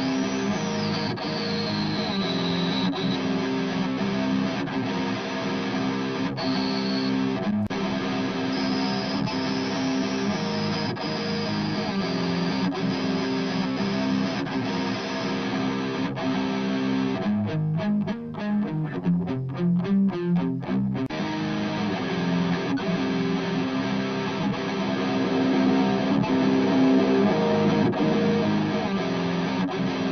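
Distorted electric rhythm guitar track playing back in a mix, with a narrow treble EQ boost swept across it to hunt for a scratchy resonance. The boost is heard as a thin high ringing that slides downward in the first few seconds and wanders again later. About two-thirds of the way in, the guitar plays a few seconds of short, choppy stop-start chugs.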